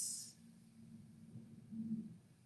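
A quiet room with a faint low hum, after a short hiss right at the start.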